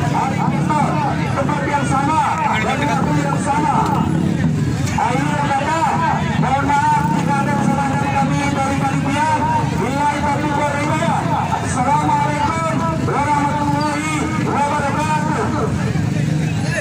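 A man's voice amplified through a handheld microphone and horn loudspeakers, talking steadily, over the chatter of a crowd.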